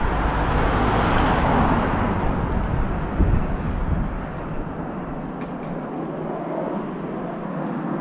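Traffic noise from a road vehicle passing by: a swell of tyre and engine noise that peaks in the first couple of seconds and fades, its low rumble dropping away about halfway through.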